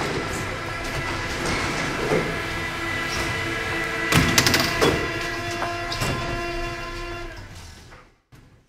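Recording of a train: rail clatter and knocks under steady held tones, with a cluster of knocks about four seconds in, fading out near the end.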